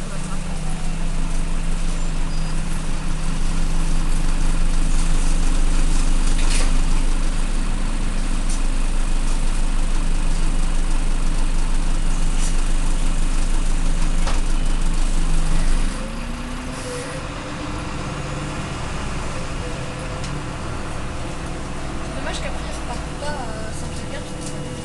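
Irisbus Citelis city bus heard from inside the passenger cabin, its engine pulling steadily under load as the bus drives along. About sixteen seconds in, the engine note suddenly drops and the cabin turns quieter.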